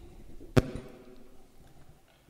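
A single sharp knock about half a second in, with a short ringing tail that fades over the next second.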